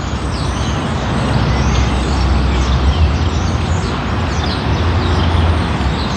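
Low engine rumble of a heavy road vehicle, growing louder from about a second in and staying loud through the middle.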